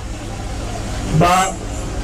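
A man's voice amplified through a handheld microphone and loudspeakers, one short phrase about a second in, over a steady low rumble.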